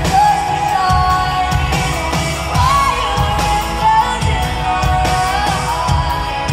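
Live pop song performance: a female lead vocal sung over a full band with bass and a steady drum beat.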